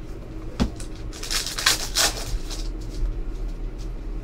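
Trading cards being handled: a sharp tap about half a second in, then a burst of rustling and light clicking as the cards in a stack slide across one another while being flipped through.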